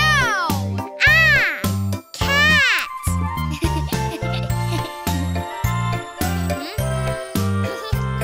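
Bright children's song backing music with a bouncing bass line. In the first three seconds a child's voice calls "Meow!" three times, each call rising and then falling in pitch, imitating a cat.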